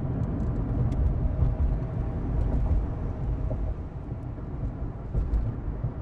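Steady low rumble of a car being driven, engine and road noise heard from inside the cabin.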